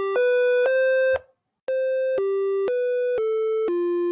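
Simple electronic melody of single plain beeping notes, each about half a second long, stepping up and down in pitch, with a brief break about a second in.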